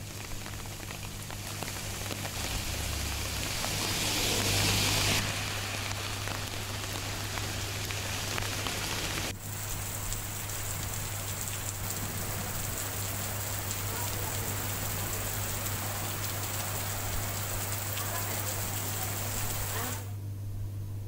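Heavy monsoon rain pouring steadily: a continuous hiss of downpour on trees and a waterlogged road. It is loudest about four to five seconds in and dips briefly about nine seconds in, with a low steady hum underneath.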